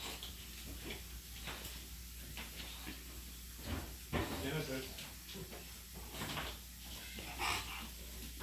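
Faint, indistinct voices and light handling noises in a quiet room, with a small knock about four seconds in.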